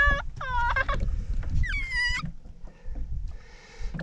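A child's high-pitched squeals, three short ones in the first two seconds, each gliding down in pitch, over a low rumble of wind on the microphone.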